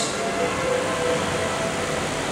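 Steady background hum and hiss with faint held tones underneath, no speech.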